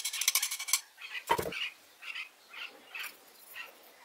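Metal parts of a restored cast-iron block plane being handled and fitted by hand: a quick run of clicks, a single knock about a second and a half in, then a string of short squeaks.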